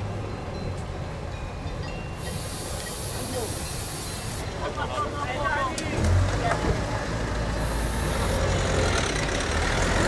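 A car engine running low nearby, coming in about six seconds in, with two spells of sharp hissing and people talking in the background.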